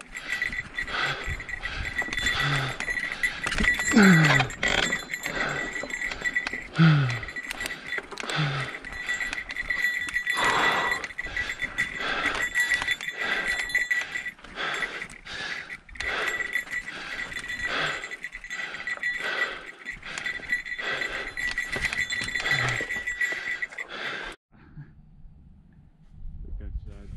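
Hard, groaning breaths of a mountain biker straining up a steep rocky climb, over the clatter and knocks of the bike on rough trail and a steady high-pitched whine. The sound drops away suddenly near the end.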